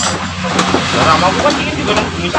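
Indistinct talking over a steady low hum, with a sharp click right at the start.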